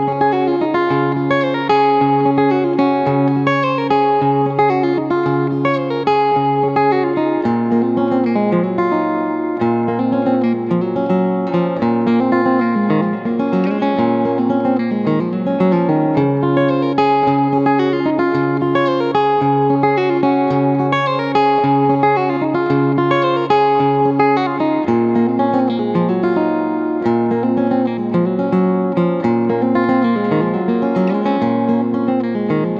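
Full-size Martin steel-string acoustic guitar heard plugged in through its piezo pickup alone, its internal mic switched off, playing a steady chord progression over a repeating bass note.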